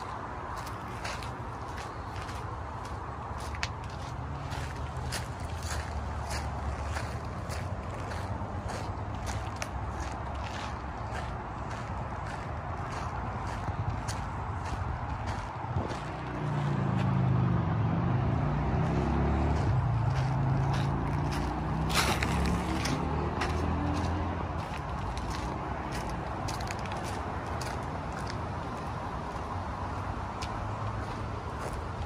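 Steady footsteps on dirt and gravel over a constant hum of freeway traffic. Partway through, a louder vehicle engine swells and fades as it passes, its pitch shifting, with a sharp click near its peak.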